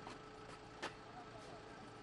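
Faint steady hum of an idling vehicle engine, with a few sharp clicks, the loudest a little under a second in.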